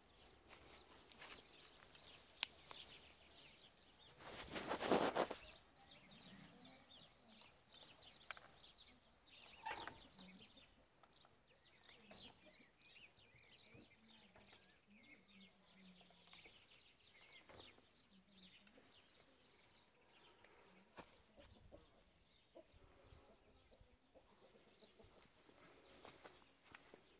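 Faint bird chirping throughout, quiet enough to be close to silence. A brief rush of noise lasting about a second comes about four seconds in, and there are a few sharp clicks.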